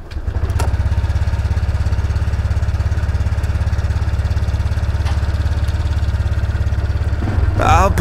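Honda Click scooter's single-cylinder engine coming on just after the start and then idling steadily with an even low pulse as it warms up. Music comes in near the end.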